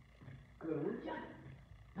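A man preaching in a loud, emphatic voice: one short phrase about half a second in, after a brief pause.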